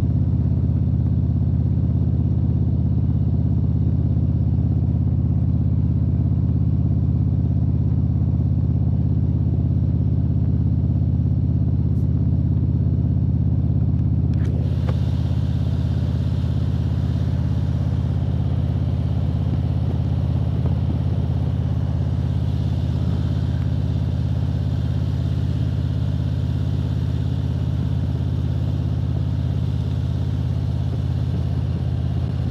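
A touring motorcycle's engine running at a steady cruise, with wind and road noise. About halfway through there is a click, after which a higher wind hiss comes in and stays.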